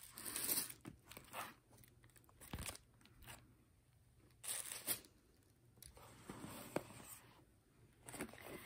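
Faint, intermittent rustling and handling noises as paper packaging and a cloth dust bag are lifted out of a cardboard gift box, with one sharp little click near the end.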